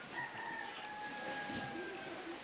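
A rooster crowing: one long drawn-out call of nearly two seconds, sliding slightly down in pitch.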